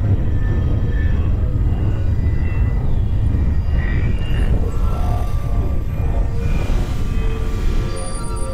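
Experimental electronic synthesizer drone: a dense, steady low rumble with short, scattered synth tones drifting above it.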